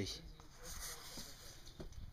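Faint voices in the background over low, steady outdoor noise.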